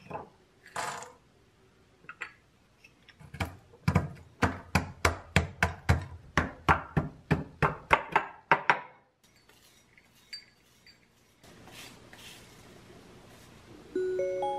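Wooden pestle pounding roasted peanuts in a ceramic suribachi mortar: after a short rattle near the start, a steady run of sharp knocks about three a second begins about three seconds in and stops about nine seconds in, breaking the nuts into coarse pieces.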